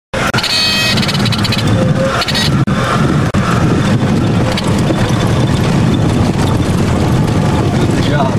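Light aircraft's piston engine and propeller running steadily, a loud low drone. It cuts out for a split second just after the start.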